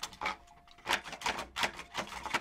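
Wooden key and bolt of an old wooden door lock clacking as they are worked open: about five sharp wooden knocks in quick, uneven succession.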